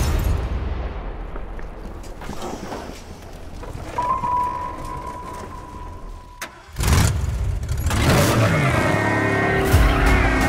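Movie-trailer sound mix: a low rumble fades away, a single high steady tone holds for about three seconds, then a sudden loud hit. From about eight seconds a wailing siren comes in over engine and tire noise as the Ecto-1, a converted Cadillac ambulance, drives off.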